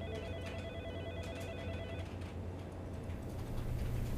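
An electronic telephone ringing with a rapid warbling trill for about two seconds, then stopping, over a steady low hum.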